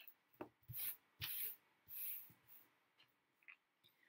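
Short scratchy rubbing strokes on paper, about four in quick succession in the first two and a half seconds, then fainter touches.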